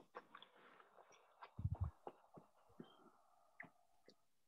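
Near silence on an open video call: faint background hiss with a few small clicks, and one brief low sound about one and a half seconds in.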